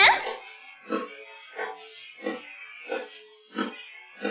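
Faint, muffled rhythmic pulses of the song's backing instruments, left over in a vocal-isolated pop-rock track, about one every two-thirds of a second. A female sung note cuts off right at the start.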